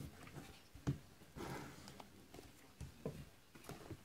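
Faint handling of a shrink-wrapped cardboard trading-card box: a few light taps and clicks, with a brief crinkle of plastic wrap about a second and a half in.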